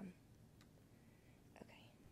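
Near silence: room tone after speech stops, with a faint click about half a second in and a faint short breathy sound near the end.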